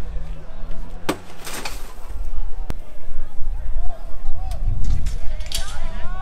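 A few sharp cracks and bangs, one about a second in, another a little later, one near the middle and one near the end, over a steady low rumble, with voices shouting in the last two seconds.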